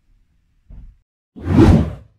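A whoosh transition sound effect about one and a half seconds in, lasting about half a second, leading into the channel's intro jingle.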